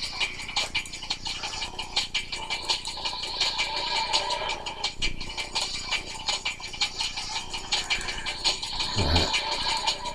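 Background music playing steadily, with a busy ticking texture throughout.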